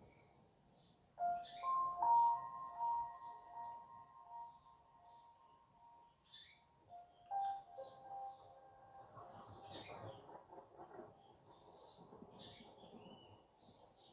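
Soft background music of long held, sustained notes that change pitch a few times, with short high bird-like chirps scattered throughout.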